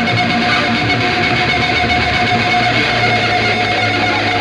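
Heavy metal instrumental: a distorted electric bass solo playing high, guitar-like lines, with a low note held from about halfway in.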